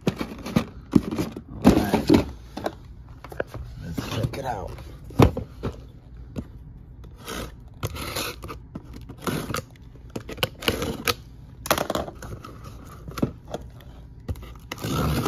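Cardboard and plastic blister packs being handled: irregular scrapes, rustles and clicks, with one sharp click about five seconds in. In the second half a box cutter is drawn along the packing tape of a cardboard shipping case.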